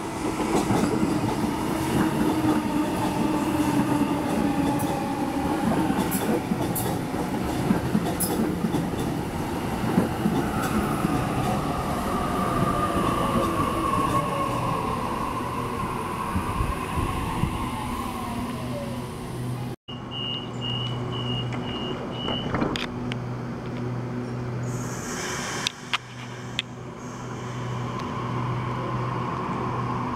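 Sydney Trains Waratah electric train pulling into the platform and braking, its motor whine falling in pitch as it slows. Once it stands there is a steady low hum, a short high tone and then a hiss. Near the end a whine rises as the train starts to pull away.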